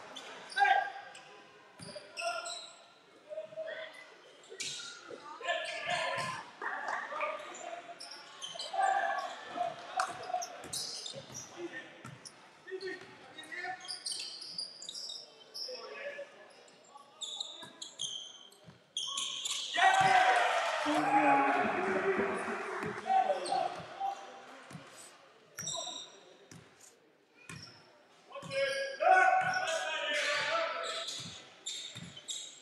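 A basketball bouncing on a wooden sports-hall court during live play, with scattered knocks and players' voices calling out, all echoing in the large hall. About twenty seconds in, a louder burst of voices rises for a few seconds.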